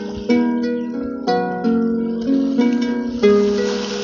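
Small wooden harp played by hand: plucked notes and chords in a slow, steady beat, a new low chord struck about once a second and each left to ring. A soft hiss rises under the notes near the end.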